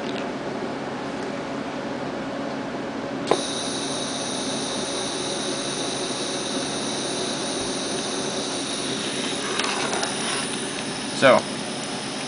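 Steady electrical hum, then a click a few seconds in and a high-pitched whine of several steady tones that comes on and holds: the homemade CNC's stepper driver board and stepper motors energizing as the 24-volt system powers up.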